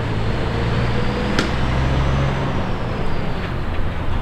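Engine of an enclosed car-transporter truck running steadily as it drives away, a low, even hum. One sharp click comes about a second and a half in.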